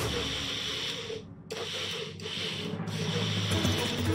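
Small personal blender running as it blends yellow citrus juice, its motor noise dipping briefly a few times.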